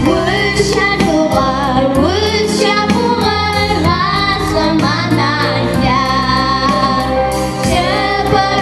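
Two children, a girl and a boy, singing into microphones over instrumental accompaniment.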